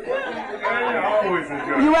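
Only speech: several people talking over one another.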